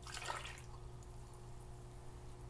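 Milk pouring from a measuring cup onto mashed potatoes, a faint brief liquid splash in the first half second, followed by only a faint steady hum.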